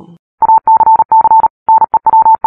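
Electronic beeps at one mid pitch, switched on and off in a run of short and longer pulses with uneven gaps, like Morse code, starting about half a second in. It is a news-intro sound effect.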